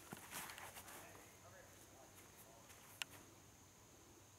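Near silence: faint scuffing footsteps on the ground in the first second, a thin steady high hum throughout, and one sharp click about three seconds in.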